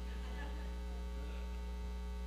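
Steady low electrical mains hum with a ladder of faint, even overtones, unchanging throughout.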